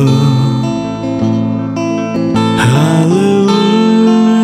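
Slow ballad music: a Fender Telecaster electric guitar, capoed, playing sustained chords over bass and keyboard. The tail of a held sung note fades in the first moment, and a note slides upward about two-thirds of the way through.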